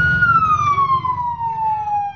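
Emergency vehicle siren: one pitched tone that holds steady, then slowly glides down in pitch, over a low rumble.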